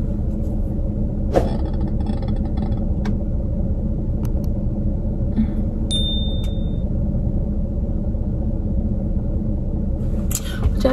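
Steady low rumble inside a parked car, typical of its engine idling, with a few light clicks. About six seconds in, a short high electronic tone with a chime plays as an on-screen subscribe button animates.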